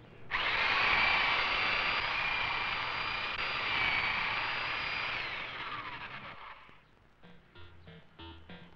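Electric hedge trimmer running steadily with a high motor whine, then winding down, its pitch falling, as it is switched off about five seconds in.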